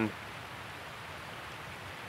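A steady, even rushing noise with nothing else standing out.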